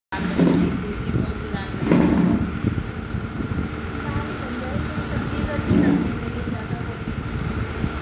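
Indistinct voices talking now and then, about half a second, two seconds and six seconds in, over a steady background noise with a faint constant whine. The sound cuts out completely for a split second right at the start.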